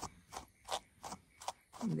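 Small slicker brush stroked through a Jersey Wooly rabbit's long wool: about five short, quick brushing strokes, two or three a second. The brush is combing out the remains of a mat just pulled apart by hand.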